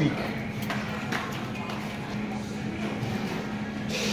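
Background room sound: faint voices and music over a steady low electrical hum, with no distinct event standing out.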